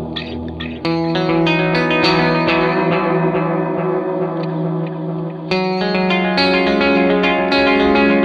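Electric guitar playing picked chords through an Electro-Harmonix Deluxe Memory Man analog delay, each note followed by repeating echoes. The chord changes about a second in and again past the middle.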